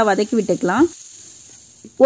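Faint, steady sizzling of shredded cabbage, onion and carrot frying in oil in a pan. It is heard on its own after a short spoken phrase in the first second.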